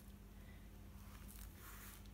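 Near silence: room tone with a steady faint low hum, and faint rustling in the second half as the paper and card mini album is handled open.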